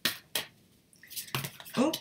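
Deck of tarot cards being shuffled by hand: two sharp card snaps in the first half-second, then softer shuffling, as a card slips out of the deck.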